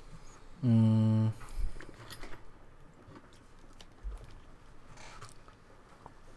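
A man's drawn-out, level hesitation hum lasting under a second, shortly after the start, followed by faint scattered clicks and taps over quiet room tone.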